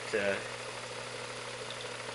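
Modified Visible V8 model engine running at a steady slow idle, a constant hum with a light hiss, about fifteen minutes into its running-in.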